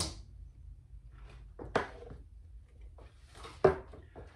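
Two short knocks of kitchen items set down on a wooden countertop, a lighter one about halfway through and a sharper, louder one near the end, with quiet room tone between.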